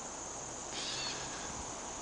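Steady high-pitched insect chorus, with a faint short sound a little under a second in.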